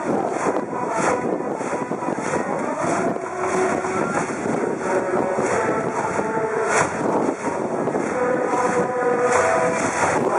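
High-school brass band playing a baseball cheering song: sustained brass notes that change pitch over a steady percussion beat, with a large cheering section in the stands.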